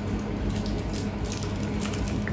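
Crinkly rustling of a sweet's wrapper being picked open by hand: a few short crackles, over a steady low hum.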